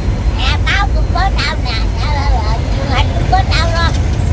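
Speech over a steady low rumble of street traffic.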